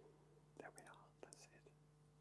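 Near silence: faint, quiet speech, close to a whisper, for about a second, over a steady low electrical hum.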